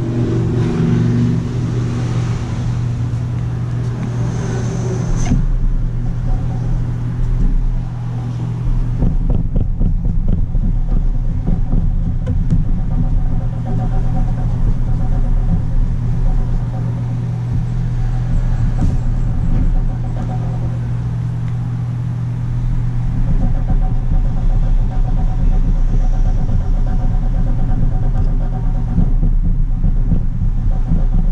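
A steady, loud low hum runs throughout. Over it come faint scratchy rubbing sounds of a tissue wiping the laptop's board with alcohol.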